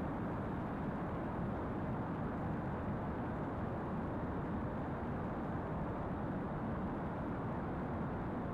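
Steady, even background noise with no distinct sounds in it.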